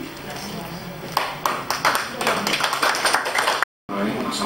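A few people clapping, starting about a second in with irregular sharp claps over background chatter, cut off abruptly near the end.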